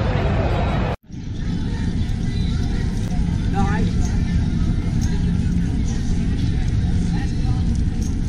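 Strong, steady low rumble of wind on a body-worn camera's microphone, with indistinct chatter of a passing crowd. The sound drops out abruptly about a second in at an edit, then the rumble starts.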